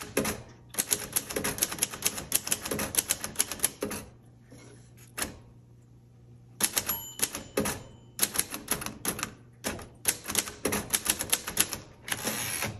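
1950 Royal Quiet Deluxe manual typewriter being typed on quickly: a fast run of keystrokes, a pause of about two seconds with a single stroke, then another fast run. Its margin bell dings once about seven seconds in, as the carriage nears the end of the line.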